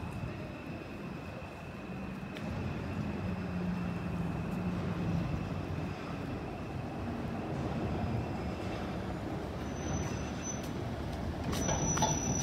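Busy city-street traffic: a steady rumble of idling and slow-moving cars, with a low drone that swells for a few seconds in the middle.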